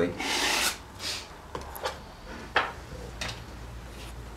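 Oil-painting brush rubbing paint onto a stretched canvas in a series of short strokes. The longest stroke comes right at the start, and there is a sharper tap about two and a half seconds in.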